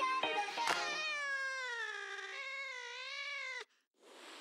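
Background music: plucked notes, then a long, falling, wavering meow-like call that cuts off abruptly near the end.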